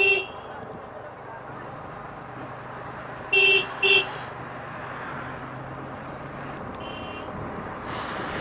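Motorcycle horn giving short beeps, once right at the start and twice in quick succession about three and a half seconds in, over the steady running of the motorcycle's engine and road noise at low speed. A fainter, higher beep follows near the end.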